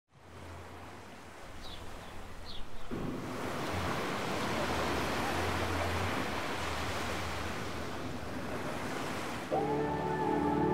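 Sea surf washing against a rocky shore, a steady rush that swells about three seconds in, with two faint high chirps early on. Soft ambient music comes in near the end.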